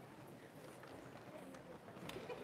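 Quiet hall with faint, scattered footsteps of people walking across the wooden stage, under a low murmur of voices.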